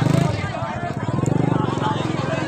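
A small engine running steadily with a fast, even pulse, under people's voices.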